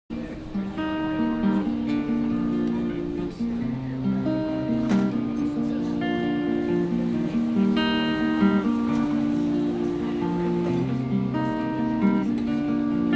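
Acoustic guitar playing a song's instrumental intro, a steady repeating pattern of picked notes.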